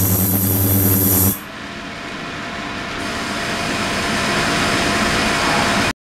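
Ultrasonic tank equipment running with a steady hum and a high whine that cuts off suddenly about a second in. It gives way to a hiss of water and bubbles that grows louder, as the tank switches between ultrasonic output and liquid circulation.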